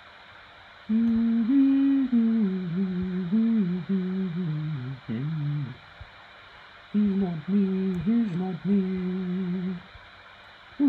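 A man humming a tune to himself in two phrases: the first about five seconds long, then a pause of about a second, then a second phrase of about three seconds. The notes are held and step up and down.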